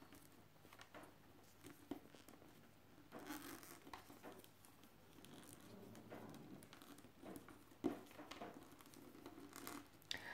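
Faint rustling and scraping of rolled newspaper tubes being bent upright and woven by hand, with a few light taps.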